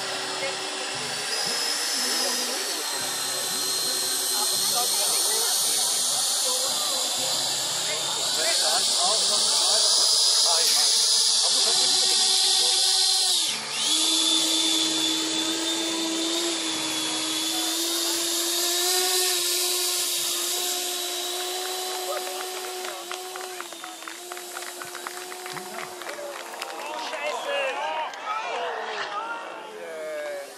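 Model jet turbine engines of a 1/16-scale RC Airbus A330-300 airliner running in flight: a high, steady whine over a rushing hiss, breaking off briefly about halfway through and growing choppier near the end.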